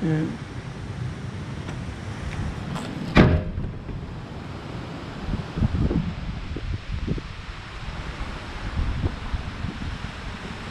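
A door banging shut once, sharply, about three seconds in. Then irregular low rumbles of wind on the microphone.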